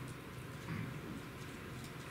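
Quiet room tone: a faint, steady low hum with no other distinct sound.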